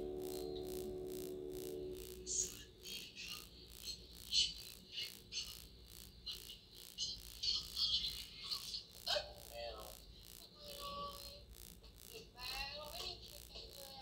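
Faint soundtrack of a Thai TV drama playing back: a held synth chord for about the first two seconds, then quiet snatches of dialogue.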